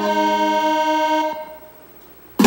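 Saxophone and accompaniment holding a long sustained note that ends and fades out about a second and a half in, leaving a short lull between phrases.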